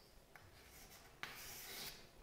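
Chalk scratching on a chalkboard: a faint single stroke lasting under a second, a little past the middle, otherwise near silence.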